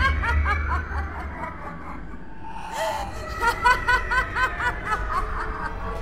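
One person laughing loudly and high-pitched in rapid ha-ha-ha pulses, about five a second. A first run dies away about a second and a half in, and a second run follows from about three to five seconds in.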